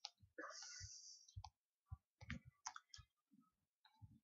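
Near silence broken by faint scattered clicks, about a dozen, from a laptop being operated as a browser tab is clicked open.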